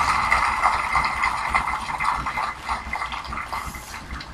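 Audience applause, fading away near the end.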